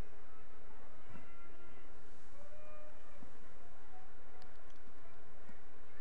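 Steady field ambience of an outdoor soccer game, with faint, distant player calls about a second in.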